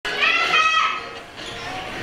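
Young people's voices talking and calling out in a hall, with one loud, high voice in the first second and quieter chatter after it.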